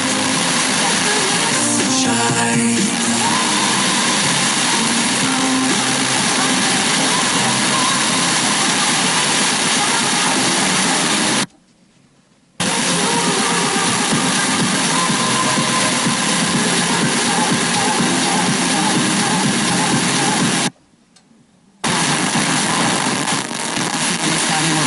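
Tivoli Audio PAL+ FM radio hissing loudly between weak stations while scanning the band, with faint music and speech breaking through the static. The sound cuts out twice for about a second as the tuner steps to the next frequency.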